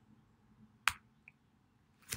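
A single sharp click just under a second in, with a much fainter tick shortly after, over quiet room tone.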